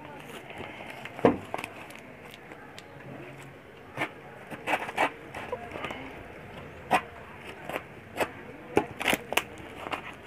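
Cardboard shipping box being torn open by hand: irregular sharp tearing and crackling sounds, the loudest about a second in, with a cluster in the middle and more near the end.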